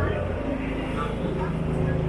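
Passersby talking in fragments over a steady low hum.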